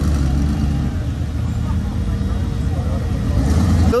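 Audi R8's engine running at low speed as the car rolls past, a steady deep rumble that swells slightly near the end.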